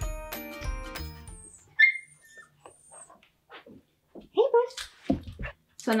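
Background music that stops about one and a half seconds in. Then an Australian Shepherd puppy gives one short, sharp yip, and a couple of seconds later a few gliding whines.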